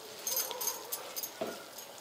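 Faint clinks and light wet handling sounds from a hand working soaked puffed rice in a steel plate of water, a few soft clicks spread through the moment.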